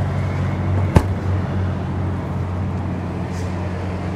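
Motorhome's 12.5 kW onboard generator running with a steady low hum, its exhaust close by. A single sharp click about a second in.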